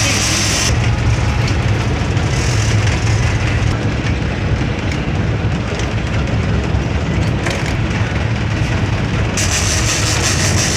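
Boat's engine running with a steady low rumble, mixed with wind and sea noise.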